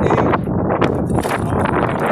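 Strong gusting wind buffeting the microphone, with irregular rattles and knocks from a manual wheelchair rolling over concrete.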